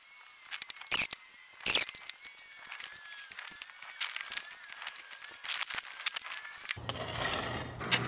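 Hands sprinkling a dry salt, pepper and garlic rub onto raw beef ribs and patting it in: an irregular run of soft taps and rustles, two of them louder about a second in and just under two seconds in. A faint, thin, slightly wavering high tone sits behind it.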